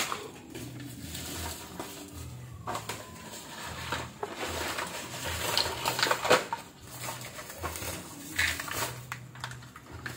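Light clatter and scattered knocks of small hard objects being handled, with short pauses between them.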